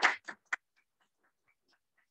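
A voice trailing off in the first moment, then a lull with a short click about half a second in and a few faint scattered ticks.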